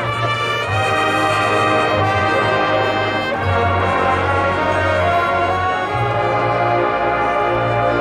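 High school marching band's brass playing loud sustained chords over a held low bass note, with a chord change about three and a half seconds in.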